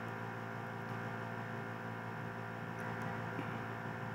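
Steady electrical mains hum with a buzz of stacked overtones, unchanging throughout.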